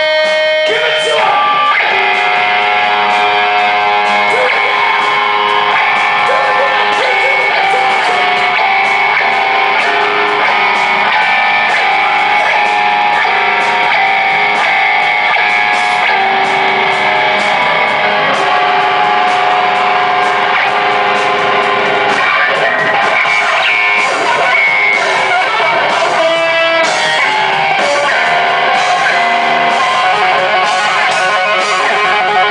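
Loud distorted electric guitar lead through a stage PA, a Yamaha Pacifica with Seymour Duncan pickups: long sustained notes that change every few seconds, with wavering bent notes and a quicker run of notes near the end.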